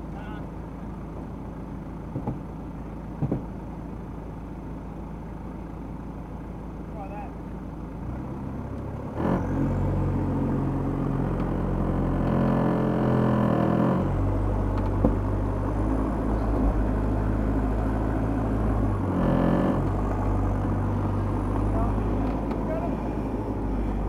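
Toyota Land Cruiser Prado 90 series engine idling, then taking load about eight seconds in with a knock. Its engine note rises for a couple of seconds, and it keeps running under load as the 4WD crawls over the rock section.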